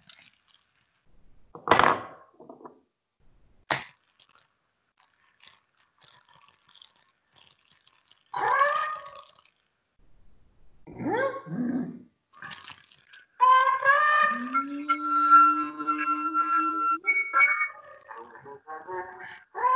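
Sparse contemporary music for sopranino flute with extended playing. There are scattered breathy bursts and clicks with silences between, bending voice-like glides, and near the end a held note over a low steady hum.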